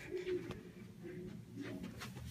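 Faint, muffled voices coming through a wall from the next room, low and indistinct.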